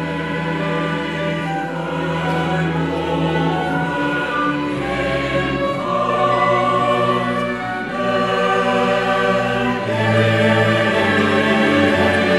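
Mixed choir singing in sustained chords with a chamber orchestra of strings and woodwinds, cellos and double bass carrying the bass line, in a passage of a choral cantata. The music swells slightly louder about ten seconds in.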